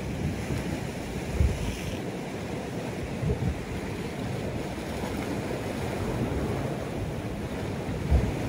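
Sea surf washing on a rocky shore, with wind buffeting the microphone in a few low bumps.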